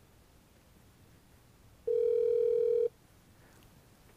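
Ringback tone of an outgoing call on an OpenStage 40 SIP desk phone, played through its hands-free loudspeaker: one steady tone about a second long near the middle, meaning the called line is ringing.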